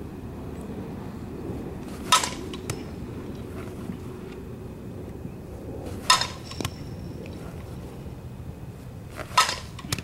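A softball bat hits three pitched balls about four seconds apart, each a sharp crack with a brief ring, followed about half a second later by a fainter knock. A low steady rumble runs underneath.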